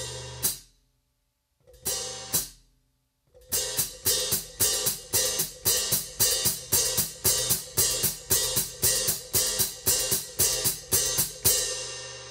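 Hi-hat cymbals played with the foot pedal alone: the heel knocks the pedal so the cymbals splash open, then the foot brings them shut in a closed foot stroke. The splash-and-close pair comes twice on its own, then repeats in a steady rhythm of about three strokes a second, and the last splash rings out near the end.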